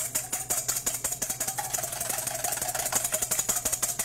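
Wire whisk beating a whole egg in a stainless steel bowl: fast, even strokes of the wires clicking against the metal, with the bowl ringing under them, stopping at the end.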